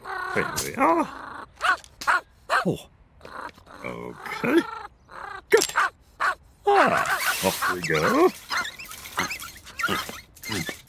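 Short wordless cartoon voice sounds in separate bursts: a man's grunts and hums, with the yaps and whines of a small dog.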